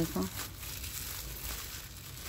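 Black plastic mulch sheet crinkling faintly as it is handled and gathered around a potted sapling's trunk.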